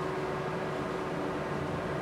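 Digital cinema projector running, its cooling fans giving a steady whir with a faint steady hum under it.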